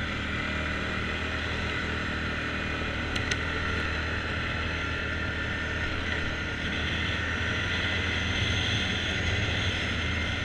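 ATV engine running steadily while riding along a gravel trail, with a low drone and a wash of tyre and wind noise, growing slightly louder about seven seconds in. A couple of short clicks sound about three seconds in.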